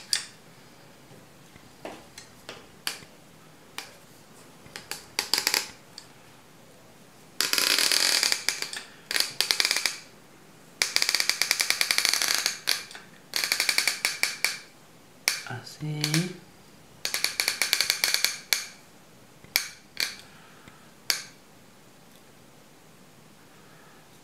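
Caulking gun pushing silicone out of its cartridge nozzle onto a wooden board, worked in repeated squeezes. Each squeeze gives a burst of rapid crackling clicks lasting up to about two seconds, about ten bursts in all, with short pauses between them.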